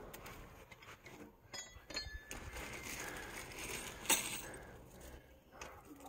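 Small metal parts of a satellite dish mount, screws and bolts, clinking as they are handled. There are a few light ringing clinks about one and a half to two seconds in, and another tap a little after four seconds.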